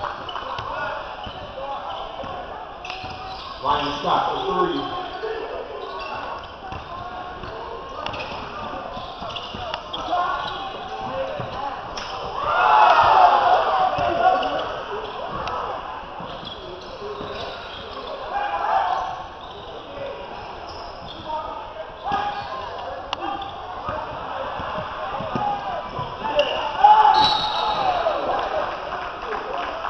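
Basketball dribbled on a hardwood gym floor during play, with players' and spectators' voices calling out in the echoing gym, loudest about halfway through and again near the end.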